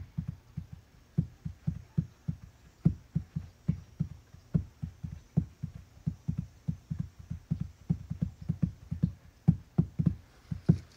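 A rapid, uneven series of soft, low thumps, about five a second.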